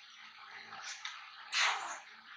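Close-miked eating: biting into and chewing a McDonald's burger with a breaded fried patty and soft bun, with wet mouth sounds and one louder, noisy bite or chew about one and a half seconds in.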